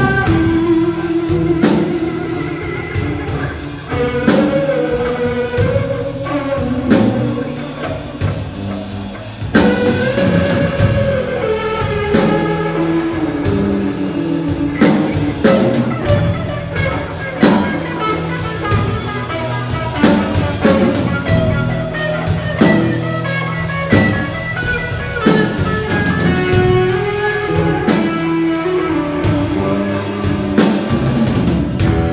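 Live blues-rock trio playing an instrumental passage: a lead electric guitar plays melodic lines with bent, sliding notes over electric bass and a drum kit keeping a steady beat.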